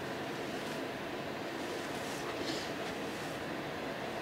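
Steady background noise, with brief faint rustling about halfway through as hands gather and tie up braided hair.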